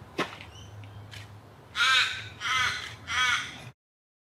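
A crow cawing three times, loud harsh calls about half a second each and evenly spaced, after a sharp click just after the start. The sound cuts out abruptly near the end.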